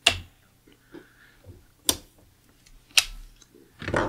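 Three sharp clicks of light switches being flipped as room and studio lights are switched back on: one at the very start, one about two seconds in, one about three seconds in.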